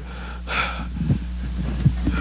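A man's sharp, breathy intake of breath close to a handheld microphone about half a second in, followed by a few soft low thumps.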